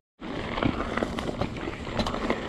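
Mountain bike rolling fast over a dirt trail: a steady rumble of the tyres on dirt and roots, with many small rattles and clicks from the bike. It starts after a very short moment of dead silence.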